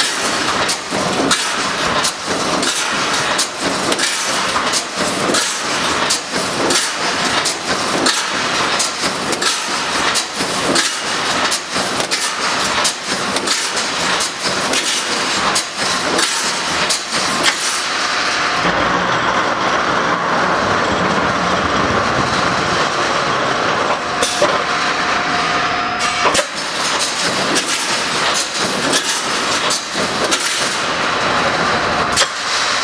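Automatic wire-mesh welding machine running: its row of welding heads fires in a rapid series of sharp clacks as the cross wires are welded. For several seconds after the middle the clacks stop and give way to a steadier mechanical running noise, then they start again near the end.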